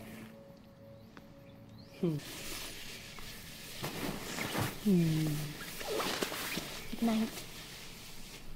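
Soft, steady music tones for the first two seconds, then a crackling hiss with several short wordless vocal sounds that slide down in pitch, the clearest about five seconds in.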